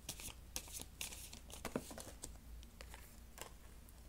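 Tarot cards being handled and dealt onto a cloth-covered table: a few short, papery flicks and slides at the start, then scattered soft clicks.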